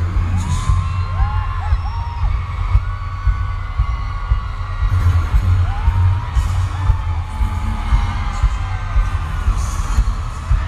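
Deep pulsing bass throb from an arena sound system during a concert intro, with fans screaming and whooping over it.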